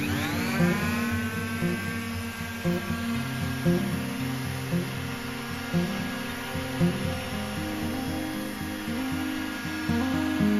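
Ryobi electric palm sander switched on, its whine rising as the motor spins up, then running steadily as it sands a wooden countertop. Background guitar music plays alongside.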